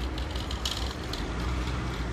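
City street ambience: a steady low rumble of road traffic, with a couple of short bursts of fast, high ticking.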